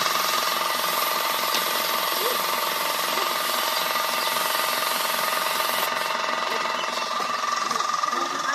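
Air compressor running steadily with a fast, even pulsing hum, under the high hiss of compressed air from a paint spray gun. The hiss thins out about six seconds in.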